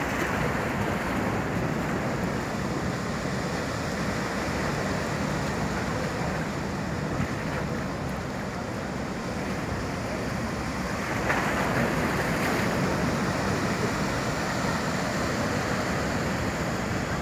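Steady rush of a fast ferry's churning wash and engines as it manoeuvres stern-in to the quay, with wind on the microphone. It grows a little louder about eleven seconds in.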